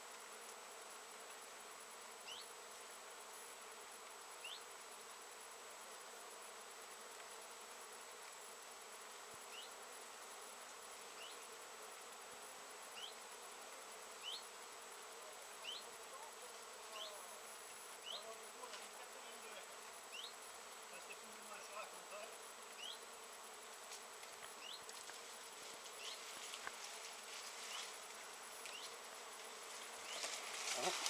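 Many bees foraging on flowers, a faint steady hum. Short high rising chirps every second or two, more frequent in the second half.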